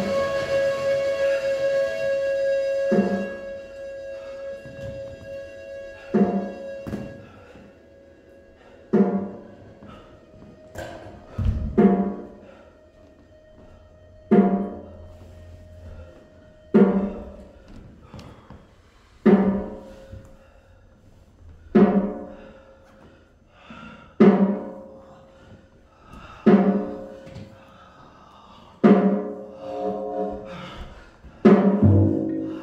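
Improvised music for drums and electronics. A sustained pitched drone holds and then cuts off about three seconds in. After that, slow pitched percussive hits come about once every two and a half seconds, each ringing briefly, with one deep low thump about twelve seconds in.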